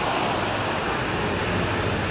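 Steady outdoor rush of ocean surf and wind. A low hum of road traffic comes in about half a second in.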